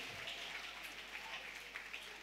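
Faint, scattered applause and clapping from a church congregation.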